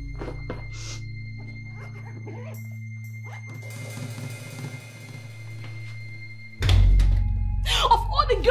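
A low, steady film-score bed under the handling of a fabric suitcase being lifted, with scattered light knocks and a stretch of rustling in the middle. About six and a half seconds in, a sudden loud low music hit swells up and takes over.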